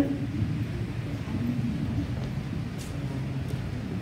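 Steady low rumble of room background noise, with no speech.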